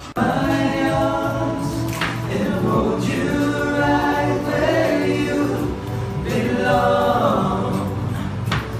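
A group of young men singing together in harmony, holding long chords, starting abruptly at the beginning.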